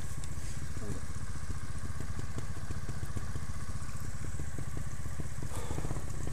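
Trials motorcycle engine idling steadily close by, with an even, regular beat.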